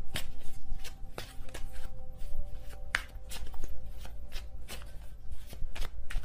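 Tarot cards being shuffled by hand: a quick, irregular run of light card clicks and snaps.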